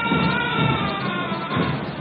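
Marching band music at a parade: a few long held notes sounding together, heard under the broadcast in a pause of the commentary.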